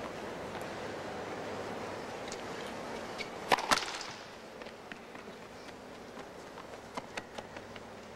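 Tennis ball struck sharply twice in quick succession, about a quarter second apart, about three and a half seconds in, over a steady background hiss that drops lower just after; a few faint ticks follow near the end.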